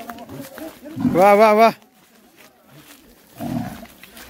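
A bull bellows once, a short loud call about a second in.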